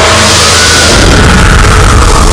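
Loud swelling whoosh, a film sound effect for a magical glow, rising and then falling away over a steady low drone.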